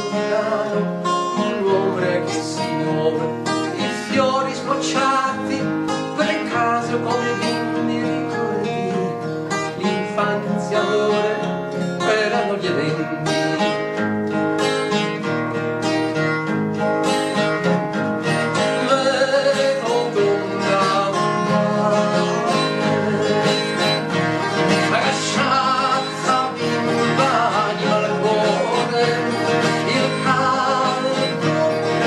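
Acoustic steel-string guitar played steadily as song accompaniment, with a continuous run of chords and plucked notes.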